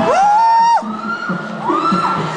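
Beatboxing through a stage PA: a held vocal note swoops up and holds, then breaks off before the middle, over low pulsing bass sounds; a second note swoops up near the end.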